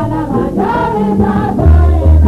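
Guinean ensemble music: several voices singing together over instruments, with held deep bass notes.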